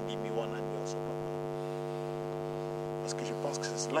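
Steady electrical hum with a stack of even overtones, unchanging in a pause between words.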